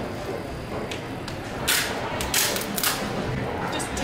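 Steady background noise of a large store's showroom, with several short, sharp hissing clicks in the second half.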